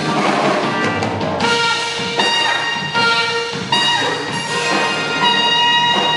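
Live jazz band playing: busy drums and cymbals for the first second and a half, then long held melody notes over the drum kit and keyboard.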